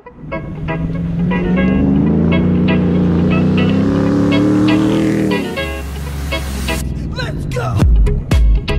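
Pickup truck engine revving hard, climbing steadily in pitch for a few seconds and then dropping off, under background music with a beat.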